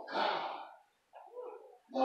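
A person's voice making short wordless sounds: a louder one at the start and a quieter one about a second in.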